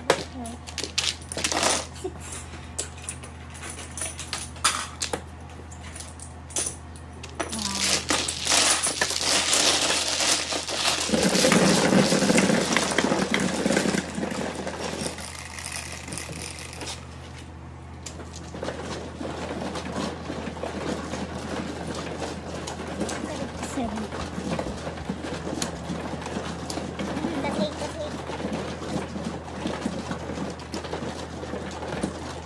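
Electronic automatic mahjong table: a run of sharp clacks as plastic tiles are swept into the centre opening, then the machine running with tiles rattling inside as it shuffles, loudest for several seconds in the middle, settling to a steadier, quieter run while it builds the new walls.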